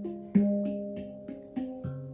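Handpan played with the fingertips: a few single notes struck one after another, each ringing on and fading, the strongest about a third of a second in.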